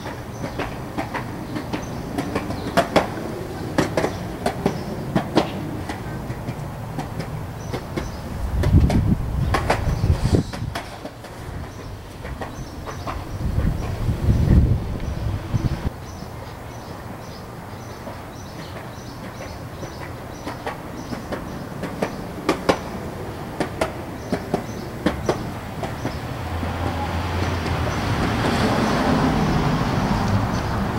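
Skateboards rolling past on pavement: a steady wheel rumble broken by sharp clacks. The rumble swells loud twice, about a third and half way through, and builds again near the end.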